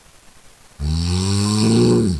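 A person snoring: after a low stretch, one loud snore starts suddenly about a second in and runs on past the end, its pitch dropping slightly as it tails off.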